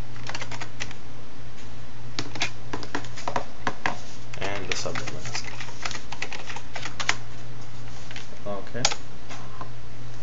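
Computer keyboard typing in quick bursts of keystrokes, over a steady low electrical hum.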